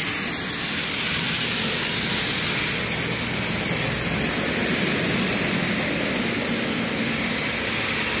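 Pressure washer spraying water through an underbody cleaning lance: a loud, steady hiss of the jet.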